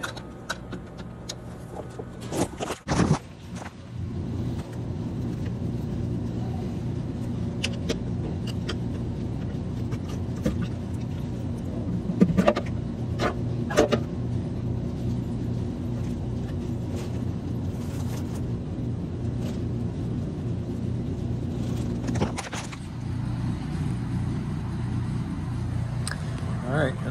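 Metal clanks and knocks from the Evo 9 RS's oil pan being worked free and pulled off the engine block, a few sharp strikes about two to three seconds in and a cluster around halfway through, over a steady low hum.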